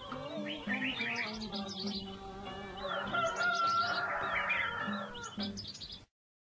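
Many short bird chirps over soft music that fades out near the end.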